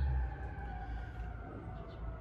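Faint, distant fire siren holding a steady wail and growing fainter. A low hum under it drops away shortly after the start.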